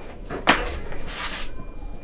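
A front door's lever handle and latch clicking as the door is opened, followed by a short rustle.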